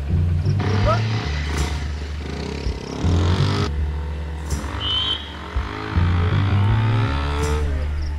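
A motorcycle engine running, its pitch rising and falling, under background film music with a heavy bass line.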